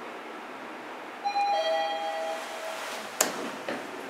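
Mitsubishi NexCube elevator's arrival chime: a two-tone ding-dong falling from a higher note to a lower one, about a second in, signalling that the car is arriving at a floor. A sharp click follows about two seconds later, then a fainter one.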